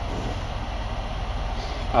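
Steady low hum of an idling engine, heard from inside a sleeper cab.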